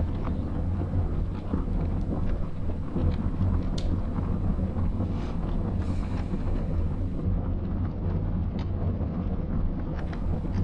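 A steady low rumble with faint, scattered short clicks over it.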